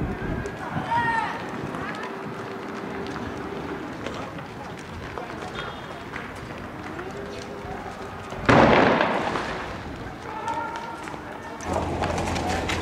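Shouting voices in the street, then one sudden loud blast about eight and a half seconds in that dies away over about a second. It comes from a street clash where shotgun fire, tear gas and petrol bombs are in use.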